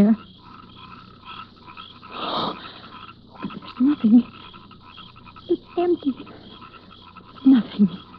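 Radio-drama night sound effect of small creatures chirping in a steady, evenly repeating rhythm. A short burst of rustling noise about two seconds in, and a few brief breathy vocal sounds from a frightened woman, come through over it.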